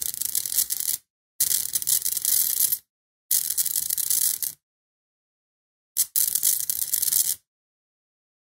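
Crackling hiss of high-voltage electrical discharge at electrodes driven by a flyback-transformer supply, strongest in the treble. It comes in four bursts of about a second or more each, and each one cuts off suddenly to silence.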